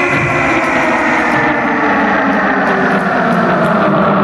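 Heavy metal band on stage holding a long distorted chord on electric guitar and bass, the stacked notes sliding slowly down in pitch as it rings out, with a light regular ticking above it.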